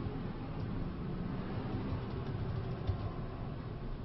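Steady room noise of a presentation room with faint, indistinct low murmuring and a single soft knock about three seconds in.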